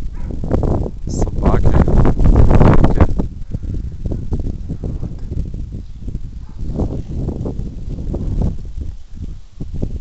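Wind buffeting the camera's microphone in uneven gusts, a low noise that is loudest about two to three seconds in, then eases into lighter gusts.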